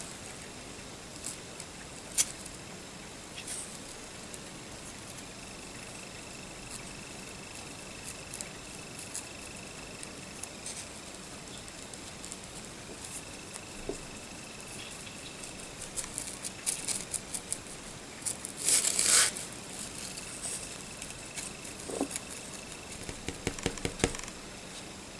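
Scattered small clicks and rustles of fingers handling a miniature plastic gun barrel close to the microphone, with a denser run of clicks near the end and one louder, brief scraping rustle about nineteen seconds in.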